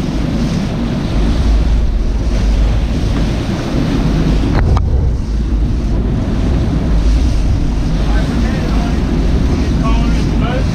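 Wind buffeting the microphone over the steady run of a sportfishing boat's engines and the churning wake at its stern, with one sharp click about halfway through.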